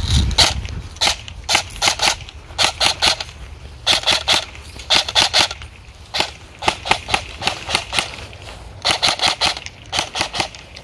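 EMG Salient Arms GRY airsoft electric gun (AEG) M4 with a G&P I5 gearbox firing many single sharp shots in quick strings, each the snap of the gearbox cycling and the BB leaving the barrel.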